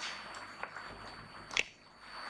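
A single sharp click or knock about one and a half seconds in, with a fainter tick before it, over light handling noise.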